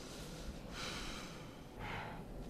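A person's audible breath out, a huff lasting under a second, followed near the end by a second, shorter breath.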